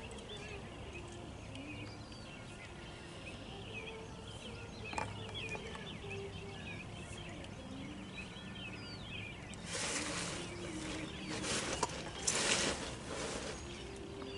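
Outdoor rural background with scattered small bird chirps and a steady low hum. Two bursts of rustling noise come in the last few seconds.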